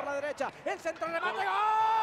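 Men's voices on a football broadcast: quick speech for about a second, then one long held shout that starts a little over a second in as a goal is scored.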